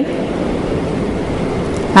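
Steady rushing background noise, even and unchanging, with no distinct events.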